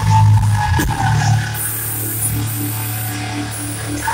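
Live metal band playing loud through a concert PA, heard from the audience: a heavy, sustained low bass and guitar note, with a pulsing tone repeating a few times a second in the second half.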